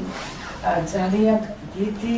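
A woman speaking, her voice beginning right after a moment of silence.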